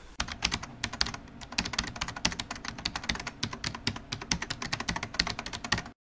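Rapid computer-keyboard typing, a fast run of sharp key clicks, several a second, that stops abruptly at the end.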